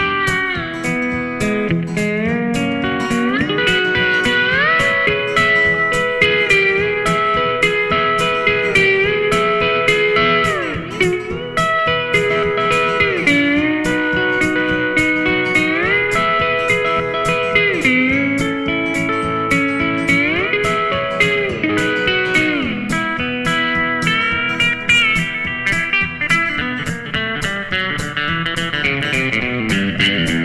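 Electric lap steel guitar playing an instrumental solo, the bar sliding up and down between notes and chords, over a steady rhythm accompaniment.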